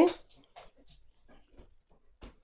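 Faint rustling and light ticks of a crochet hook working thick 5 mm cotton cord as it is drawn through the stitches, coming right after the end of a spoken word.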